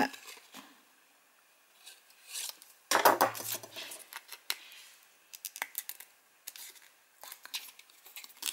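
Small scraping and handling noises of a knife working at the slits in a plastic bottle cap. About three seconds in there is a louder clatter as the knife is set down on the desk. Then a run of light clicks and taps as the stiff paper cut-out is pushed into the cap's slits.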